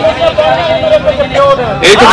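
A man's voice over a microphone and loudspeaker, chanting in long drawn-out notes rather than plain speech. A short burst of noise comes near the end.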